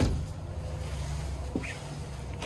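A steady low background hum, opening with a short click.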